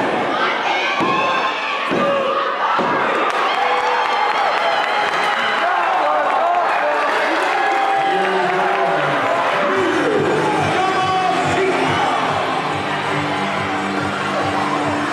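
Wrestling crowd shouting and cheering, with a few heavy thuds on the ring mat in the first few seconds. Music with steady low notes fades in from about halfway through.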